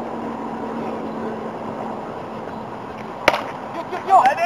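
A baseball bat hitting a pitched ball: a single sharp crack about three seconds in, over a steady background murmur at the field.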